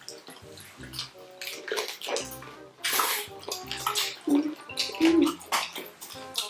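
Wet chewing and crunching of chicken feet in a thick sauce, in irregular bursts that are loudest about halfway through and again near the end, over background music.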